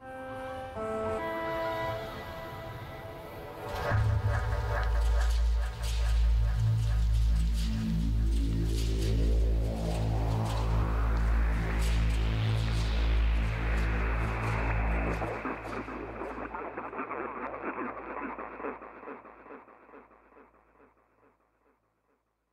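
Short ambient music sketch built from layered, processed field recordings. It opens with a few pitched tones, and a loud low drone comes in about four seconds in. A rising sweep of noise builds tension toward the middle and then releases into a noisy texture that tapers off into a fading reverb tail, falling to silence about a second before the end.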